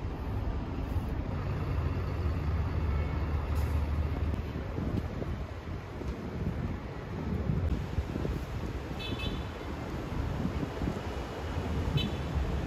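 Distant city traffic: a steady wash of road noise with a low rumble that is heaviest in the first four seconds or so. There is a brief high-pitched squeal about nine seconds in.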